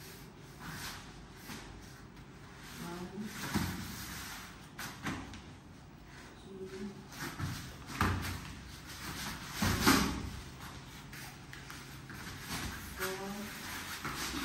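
Wrestlers scuffling on foam floor mats, with several dull thuds of bodies hitting the mat, the loudest about ten seconds in. Short vocal sounds come in between the thuds.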